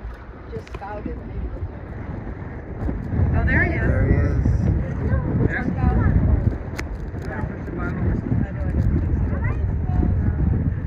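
Wind buffeting the microphone on a moving boat at sea, a heavy low rumble that grows louder about three seconds in, with faint voices in the background.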